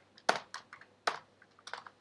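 Typing on a computer keyboard: about seven separate key clicks at an uneven pace, two of them louder than the rest.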